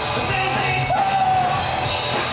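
Live rock band playing loudly, a male singer yelling over the band and scooping up into a long held note about a second in.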